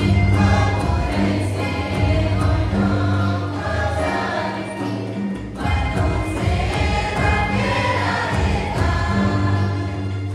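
A group of young women singing a Hindi Christian hymn together, one leading into a microphone, over a steady low instrumental accompaniment.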